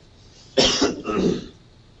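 A person coughing: two quick coughs in a row, a little over half a second in.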